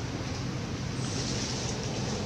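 Steady rushing background noise with a low rumble, even throughout, with no distinct event in it.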